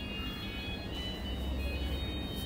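A steady low hum with several faint, steady high tones over it.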